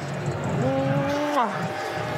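A person's voice holding one drawn-out vowel for nearly a second, falling in pitch at the end, over the low murmur of a crowd.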